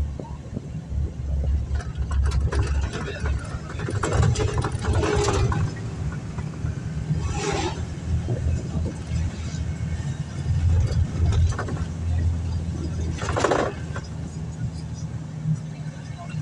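Interior sound of a moving car: a steady low engine and road hum, with a few brief louder noisy rushes.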